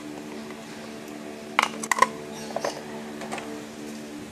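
A few light clicks and taps from hands handling a paper-wrapped package, over a steady low hum.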